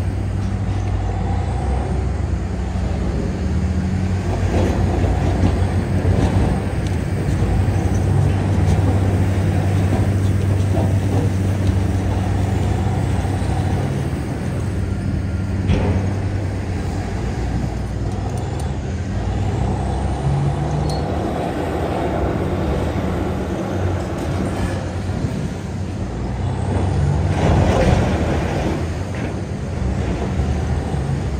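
Caterpillar 993K wheel loader's diesel engine running under load, its pitch rising and falling as it pushes marble blocks with a block-handling fork. There is a knock about halfway through and a louder scraping crunch near the end as a block tips over.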